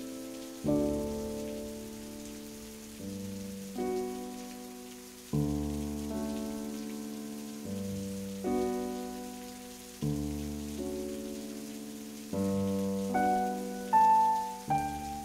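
Background music: slow solo piano chords, each struck and left to fade, a new one every second or two, over a faint steady rain-like hiss.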